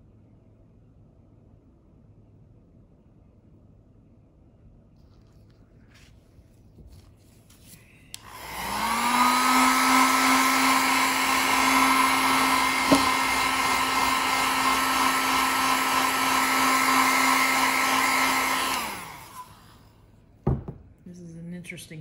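Handheld electric blower switched on about eight seconds in: its motor spins up with a rising whine, runs steadily with a loud rush of air, and winds down and stops about nineteen seconds in. A single knock follows shortly after.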